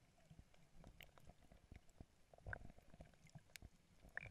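Near silence underwater: faint, muffled low rumbling with scattered faint clicks, and one slightly louder muffled knock about halfway through.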